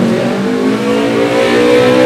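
A motor vehicle engine accelerating, its pitch rising slowly and steadily.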